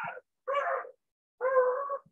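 A high-pitched animal call heard twice: a short one about half a second in, then a longer, steady one near the end.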